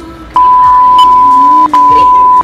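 A loud, steady, single-pitch censor bleep added in the edit, switching on about a third of a second in with a brief break near the end, over background music.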